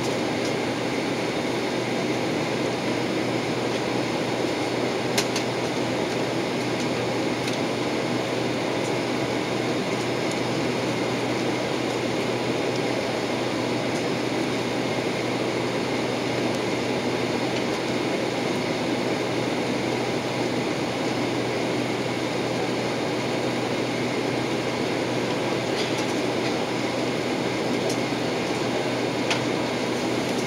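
Steady cabin noise inside a jet airliner taxiing: engine and ventilation rumble with a low hum, with a single short click about five seconds in.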